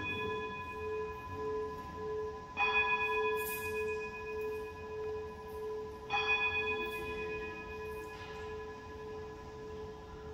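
Altar bell rung at the elevation of the host at Mass. It is struck twice, about three and a half seconds apart, each strike leaving a long, slowly pulsing ring that fades away.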